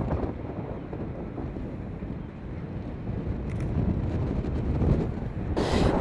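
Wind on the microphone, a low, uneven rumble that slowly grows louder, with a brief hiss near the end.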